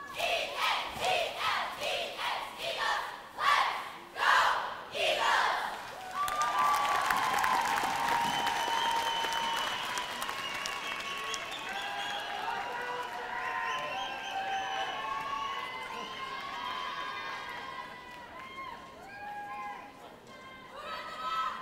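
A cheerleading squad shouting a chant in unison, about two loud shouts a second. About six seconds in it gives way to a crowd cheering and screaming over applause, which dies down near the end.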